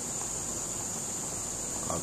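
Steady running noise of a thermoforming machine while its oven heats the sheet: an even hum and hiss with a constant high-pitched whine over it.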